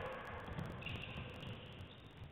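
Court sounds of a basketball game in a gym: irregular thuds of running feet and the ball dribbled on the hardwood floor, with a high-pitched squeal held for about a second.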